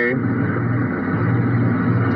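A steady low hum over an even background noise, with no speech. It is the same bed that runs under the talking on either side.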